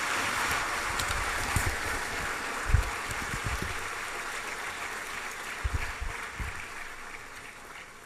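Audience applauding, the clapping slowly dying away, with a few low thumps about three and six seconds in.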